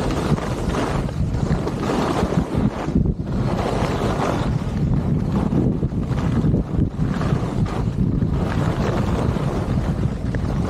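Wind rushing over the microphone of a skier's camera at speed, mixed with skis scraping over groomed snow. The noise rises and falls in waves every second or two.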